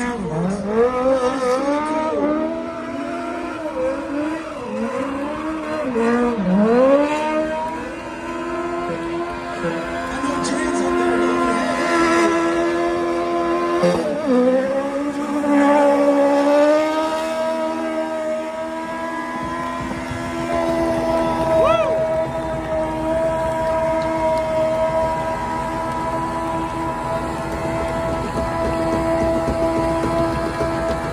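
A small race car's engine revving hard during donuts, its pitch swooping up and down again and again for the first several seconds, then held at a steady high note for the rest of the time.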